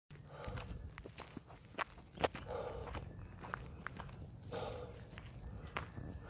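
Footsteps crunching on loose gravel and dirt, uneven, with scattered small clicks and one sharper click about two seconds in.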